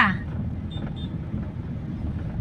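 Steady low rumble of a vehicle's engine and tyres on the road, heard from inside the moving vehicle.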